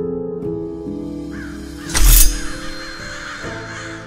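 Soft piano-like music thins out, and birds start cawing over it. About two seconds in comes a sudden, very loud hit with a deep boom, and the cawing carries on after it as the music settles.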